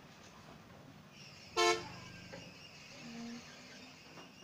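A vehicle horn gives one short, loud toot about one and a half seconds in, over steady outdoor background noise; a fainter, lower tone follows about three seconds in.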